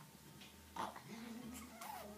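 Wordless vocal sounds from a baby: cooing and squealing that starts suddenly about three-quarters of a second in, with a short held note and a quick rise and fall in pitch near the end.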